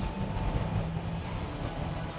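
Background music carried by steady low bass notes that shift pitch in steps.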